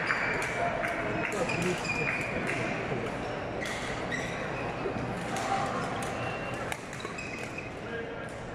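Shoes squeaking on the badminton court floor and sharp racket hits on the shuttlecock, many short high squeaks and clicks, over the chatter of a crowded sports hall.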